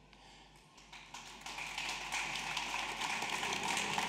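Small audience applauding. The clapping starts about a second in after a near-silent pause, then builds and carries on.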